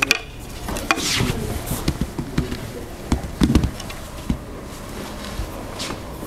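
Scattered light clicks and knocks in a quiet room, with a cluster of dull thuds about three and a half seconds in.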